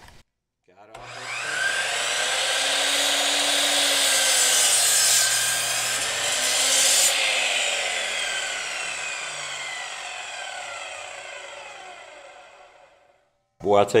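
A 15-amp Admiral 12-inch sliding compound miter saw starts about a second in and cuts through a pressure-treated 4x4 without bogging down. The cut ends about halfway through, and the motor's whine then falls steadily in pitch as the blade spins down and fades out.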